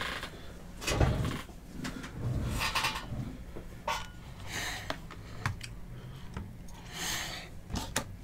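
A computer keyboard being handled and slid off a cloth desk mat: several soft scuffs and a few light clicks and knocks.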